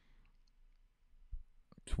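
A near-quiet pause in a small room, broken by a soft low knock about a second and a half in and a couple of faint sharp clicks just before speech resumes.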